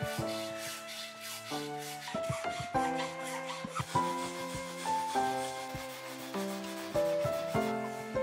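A metal file rasping in quick repeated strokes across a wooden bow piece held in a vise, under soft instrumental background music with a clear melody.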